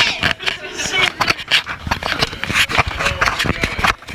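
Indistinct voices with a string of quick footsteps and knocks, as people go down a stairwell.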